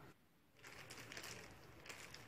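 Faint crinkling and rustling of plastic cling film being handled, with a few small clicks, after a brief near-silent gap.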